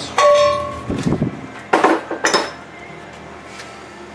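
A steel pipe nipple clinking and knocking against the sheet-metal bottom of a milk can as it is fitted into a drilled hole. The first clink leaves the can ringing briefly, and a few sharper knocks follow about a second later.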